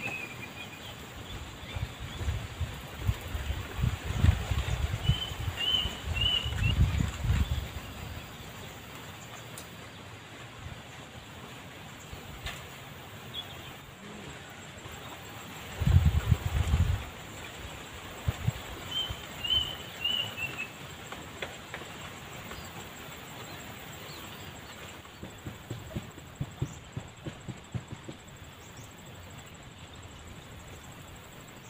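Wind buffeting the microphone in low gusts, strongest from about 2 to 8 seconds in and again briefly around 16 seconds. A small bird gives a quick falling run of high chirps twice, about 5 and 19 seconds in.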